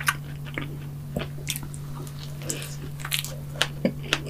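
Close-miked chewing and biting of a soft, whipped-cream and strawberry-topped donut, with irregular mouth clicks and smacks, over a steady low hum.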